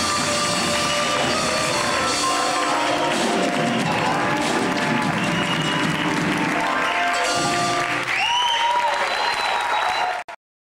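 Concert audience applauding a live jazz band, with the band's held final notes still ringing in the first few seconds. Near the end a few rising-and-falling cries come through the applause.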